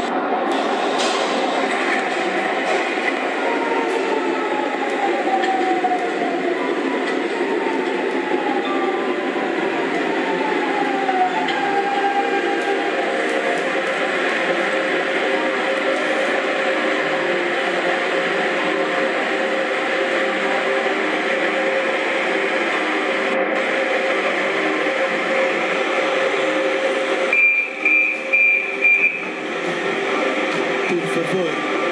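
Metro train sound effect: a steady rolling rumble with a whine that falls in pitch several times as the train brakes into the station, then four short high door-warning beeps near the end.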